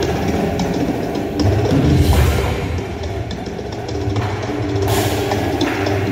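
Indoor percussion front ensemble playing: drum kit and bass drum hits over sustained pitched tones, swelling louder about two seconds in.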